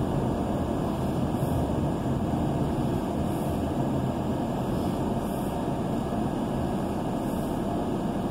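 Steady road and engine noise heard from inside a moving car's cabin.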